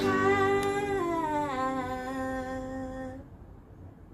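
A woman singing one long held vowel that steps down in pitch a few times, then stops about three seconds in.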